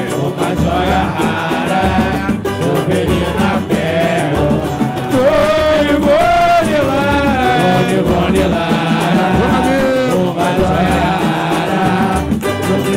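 Live samba: a band with pandeiro and other percussion keeps a steady samba rhythm while the lead singers and the crowd sing along together.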